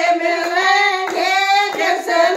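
Women singing a Hindi devotional bhajan together in one held melody, with hand claps keeping the beat at about three to four claps a second.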